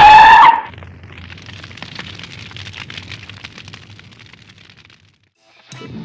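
An editing sound effect over a title card: a loud held tone in the first half second, then a crackling rumble that fades away over about four seconds. Outdoor background sound returns near the end.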